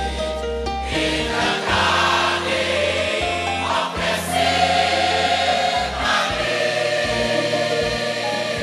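Church choir singing a gospel song with instrumental accompaniment and a steady bass underneath.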